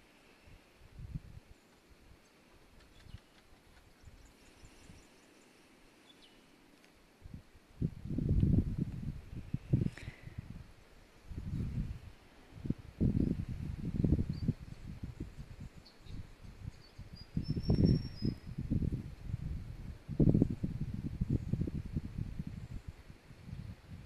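Outdoor air, quiet at first. From about a third of the way in, wind buffets the phone's microphone in irregular low rumbling gusts. A faint high bird chirp comes a little past the middle.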